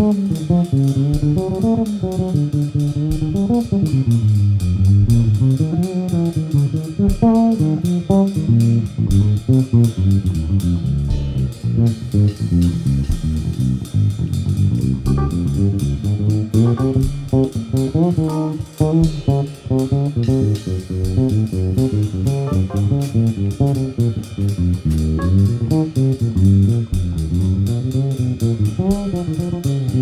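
Electric bass guitar playing a busy, moving melodic line that leads the mix, with drums keeping time on cymbals behind it, in a jazz-style band performance.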